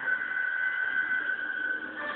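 An angry cat's long, drawn-out warning yowl, held on one high pitch and stopping just before the end; the cat is being provoked and is furious.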